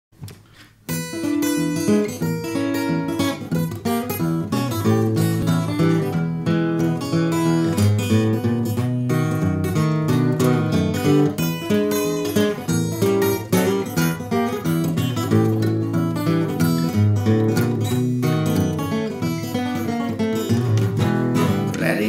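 Acoustic guitar with a mahogany body, fingerpicked: a steady alternating bass runs under the melody notes, starting about a second in.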